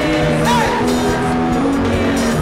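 Live gospel praise music: a women's worship team singing into microphones over a backing band, with a short wavering high note about half a second in.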